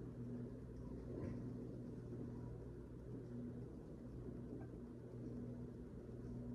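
Quiet room tone: a faint, steady low hum with light hiss.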